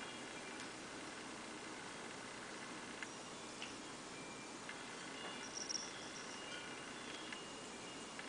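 Cat lapping water from inside a glass vase-shaped fish bowl: faint, scattered little plinks and clicks over a quiet hiss, with a brighter cluster a little past halfway.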